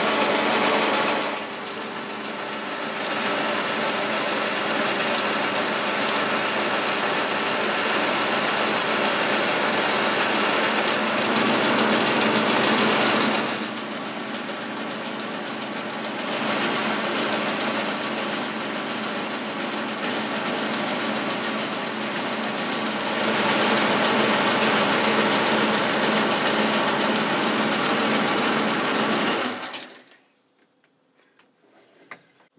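Boxford lathe running with a boring bar cutting inside a bore in chuck-held work: a steady machine drone with a high whine that comes and goes as cuts start and end. It stops abruptly near the end.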